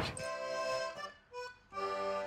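Quiet background music on a free-reed instrument: a short folk-dance tune phrase of held notes, broken by a brief pause about a second in.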